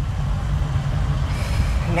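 Steady low rumble of a car being driven, heard from inside the cabin: engine and road noise with no other event over it.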